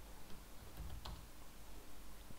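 A single short mouse-button click about a second in, over faint room noise.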